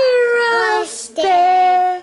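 A young girl singing unaccompanied: two long held notes, the first sliding slightly down, with a short breathy hiss between them about a second in.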